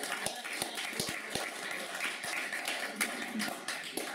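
A small audience clapping, the claps uneven and overlapping.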